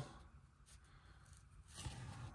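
Near silence, with the faint rubbing of 1987 Donruss baseball cards being slid across one another in the hands as one card is moved off the front of the stack, a little louder near the end.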